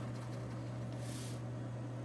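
A steady low hum, with one brief faint scratch of a black marker tip dotting a point onto paper a little past a second in.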